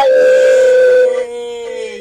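A woman singing one long held note in a gospel worship song; it drops in loudness about a second in and fades out, sagging slightly in pitch, near the end.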